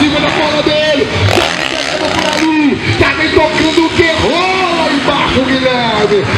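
An indistinct voice, with motocross dirt bikes running on the track behind it.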